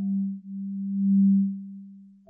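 Background music: a single low, steady electronic tone that swells and then fades away, with a brief dip about half a second in.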